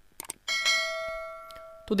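Subscribe-button animation sound effect: two quick mouse-like clicks, then a bright bell ding about half a second in that rings out and fades over about a second and a half.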